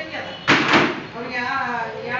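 A loud bang about half a second in, with a second knock right after it, over a woman speaking.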